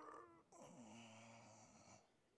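A man's faint, drawn-out yawning groan with a stretch. A first falling part fades out about half a second in, then a low, steady second part holds for over a second before stopping.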